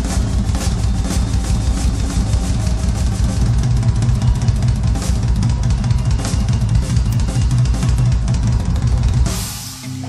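Rock drum kit playing a busy beat with bass drum, snare and cymbals in an instrumental stretch of a rock song, with no singing. About nine seconds in, the beat stops on a cymbal crash that rings out as the song ends.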